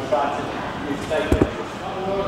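Men talking indistinctly in a large hall, with two quick knocks about a second and a third in.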